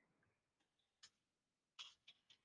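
Near silence with two faint keyboard keystrokes, one about a second in and one near the end.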